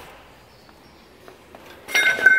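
Quiet workshop room tone with a faint hiss, broken near the end by a short, sharp knock or clatter.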